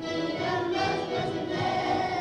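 A class of young children singing a song together in unison.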